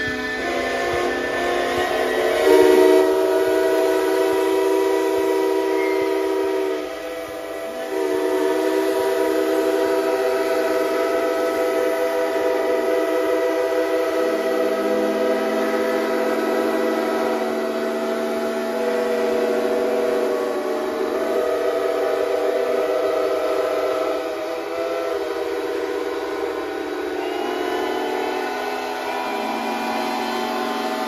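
Many steam traction engine whistles blowing at once in a dense chord of overlapping steady tones. Individual whistles drop out and join every few seconds, with a brief dip about seven seconds in.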